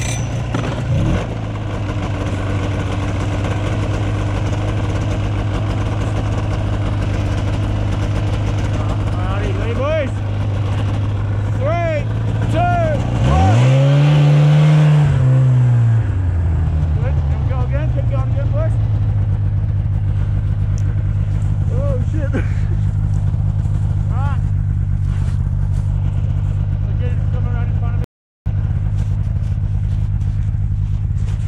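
Arctic Cat 570 snowmobile's two-stroke engine idling steadily, revved up and back down once about halfway through, the loudest part, with a few smaller blips of throttle, as it tries to pull a jammed ski free of deep snow.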